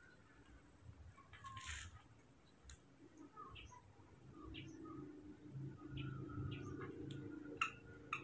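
Faint, scattered short high chirps over a quiet room, with a steady thin high-pitched whine underneath and a sharp click near the end.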